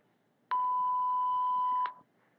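A single steady electronic beep, starting about half a second in and lasting about a second and a half before cutting off sharply. It is the cue tone that ends one segment of the interpreting practice dialogue before the next segment is spoken.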